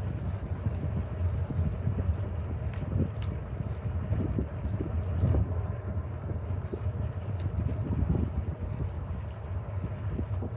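Wind buffeting the microphone of a camera on a moving bicycle: a steady, gusting low rumble with a few faint clicks from the ride.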